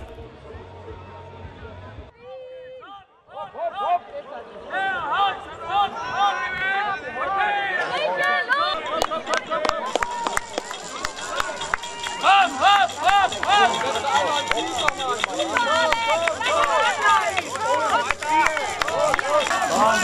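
Crowd of spectators shouting and cheering encouragement, many voices calling over one another, building up about four seconds in and staying busy after that.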